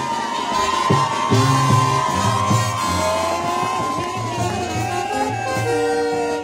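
Colombian brass band (banda pelayera) playing live: low horns pump a rhythmic bass line under long held high notes from the horns, with a crowd cheering along.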